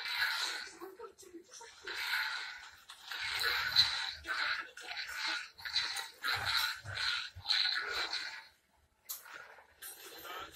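Whooshing, hissing lightsaber swing sounds as a toy red crossguard lightsaber is swung, in a quick run of short bursts with a brief pause near the end.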